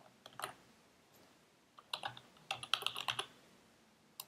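Typing on a computer keyboard: a few keystrokes near the start, then a quick run of keystrokes in the second half as a short search word is typed.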